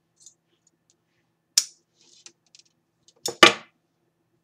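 Scissors snipping through pearl-and-rhinestone trim: a sharp snip about one and a half seconds in, a few faint ticks, then a louder double snip near the end.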